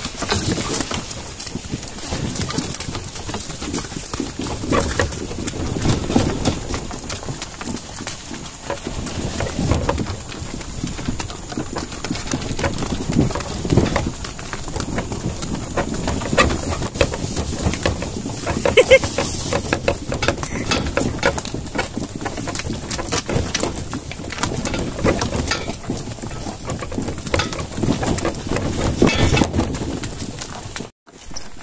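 Hooves of a draught animal pulling a wooden cart, clip-clopping in an uneven walking rhythm on a dirt track.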